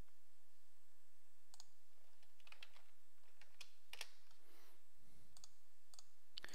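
A handful of faint, scattered computer mouse clicks over a steady low hiss, as windows are opened on screen.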